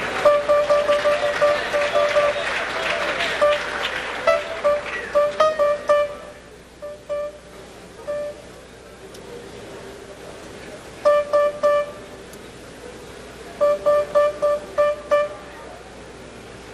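Grand piano: one note struck over and over in quick runs of several strikes, with pauses between, as a faulty key is tested during a repair. A murmur of voices underlies the first few seconds.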